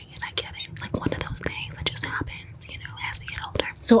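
A woman whispering close to the microphone, with small mouth clicks between the words.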